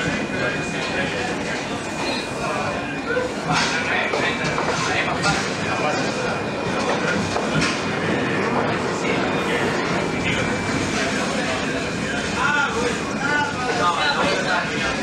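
CRRC Ziyang CDD6A1 diesel-electric locomotive running along metre-gauge track: a steady rumble of engine and wheels, with scattered clicks as the wheels pass over rail joints.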